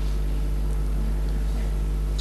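Steady low hum with a light hiss over it, unchanging throughout, with no speech.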